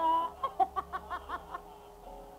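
A brief voiced sound, then a quick run of about eight short cackling calls lasting about a second.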